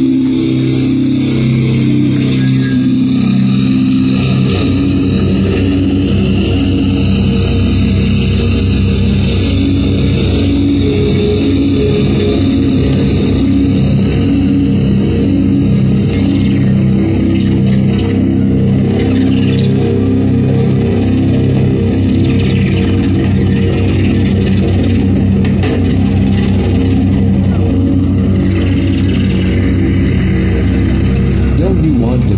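Slam death metal band playing live and loud: heavily distorted, low-tuned electric guitar and bass riffing over fast drums.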